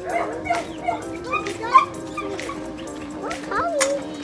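Dogs barking and yipping in short calls, in two clusters, the first in the opening two seconds and the second near the end, over steady background music.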